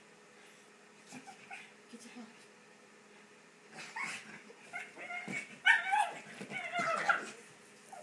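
Pug whining and yipping in excitement over a ball toy. The calls come in a burst in the second half and are loudest near the end.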